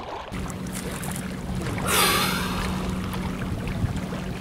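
Small lake waves lapping and washing against shoreline rocks, with a louder wash of water about two seconds in, over a steady low hum.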